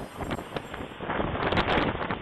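Storm wind from a derecho buffeting a doorbell camera's microphone: a dense rushing noise that grows louder about a second in and sounds thin and band-limited through the small camera mic.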